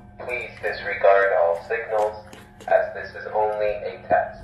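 A recorded voice over a building public-address speaker, announcing a test of the fire alarm system. A few sharp clicks come through it from a small dog crunching dry food at its bowl.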